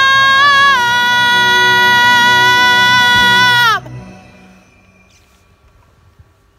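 A woman belting a long, high sustained final note over a backing track, stepping up slightly in pitch just under a second in and holding it steady. Near four seconds in, the note falls away in pitch and stops together with the accompaniment, leaving only faint background.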